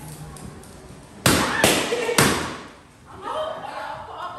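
Three balloons popped in quick succession, three sharp bangs starting a little over a second in, each with a short ring of room echo.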